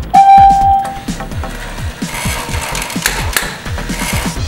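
Teksta robotic T-Rex toy giving its electronic "ding" as its nose is pressed: one bright, steady chime lasting under a second. About two seconds in, a hissing, rasping sound with a couple of clicks follows from the toy. Electronic dance music with a steady beat plays underneath.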